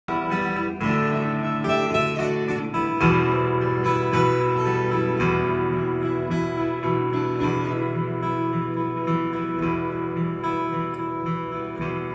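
Acoustic guitars playing together, strumming and picking chords in an instrumental intro, with a change of chord about three seconds in.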